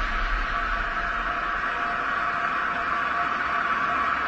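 Steady hissing drone with a faint held tone, part of an animated logo intro's sound effects, with the low rumble of an earlier boom dying away in the first second or so.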